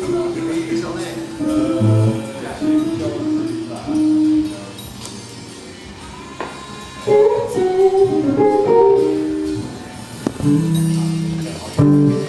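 Guitar music: a lead line of single notes that slide and bend, over sustained low notes. A voice sings 'oh' near the end.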